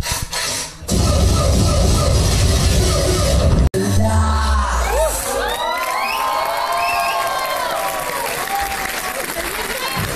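Loud dance music with a heavy bass beat. It dips briefly near the start and cuts off abruptly a little under four seconds in. An audience then cheers and whoops.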